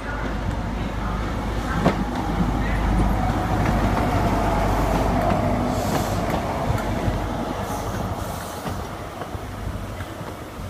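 CrossCountry InterCity 125 (HST) running past along the platform: a class 43 power car's MTU diesel engine and the rumble of the coaches, building to its loudest midway and fading as the train moves off. There is a single sharp knock about two seconds in.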